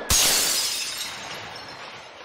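Shattering-glass sound effect: a sudden loud crash right at the start, its tail of breaking fragments fading away over about a second and a half.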